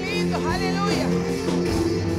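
Live worship band music at a steady level: electric guitar, keyboard and drums playing a slow passage over held chords, with a sliding melody line in the first second.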